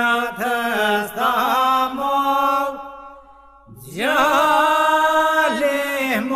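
Albanian polyphonic folk song from Kërçova sung by men: a lead voice ornaments the melody over a steady held drone (iso) from the other singers. About halfway the singing breaks off briefly, then comes back in with a rising swoop and the drone resumes.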